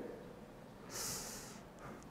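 A man's short, sharp breath, close to the microphone, about a second in and lasting about half a second, in an otherwise quiet pause.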